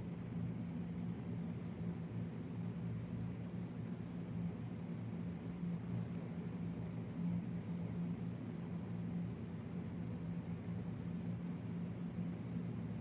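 A steady low hum over faint hiss, unchanging throughout, with no distinct events.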